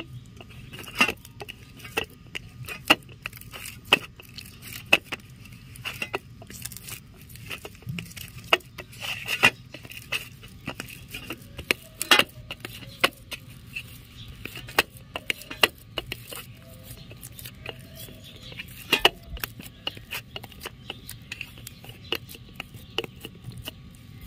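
Hands kneading soft aloo paratha dough of flour and mashed potato on a steel plate: irregular small sticky clicks and taps as the dough is pressed and folded.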